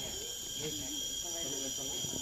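A steady, high-pitched drone of insects, with faint voices talking in the background.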